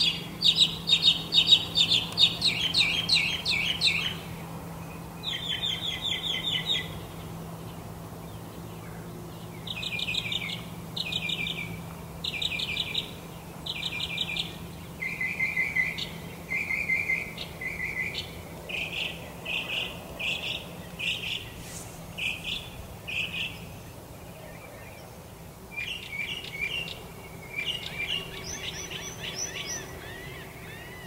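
Songbirds singing: short, rapid trilled phrases of about a second each, repeated with brief pauses, loudest in the first few seconds. A faint steady low hum runs underneath.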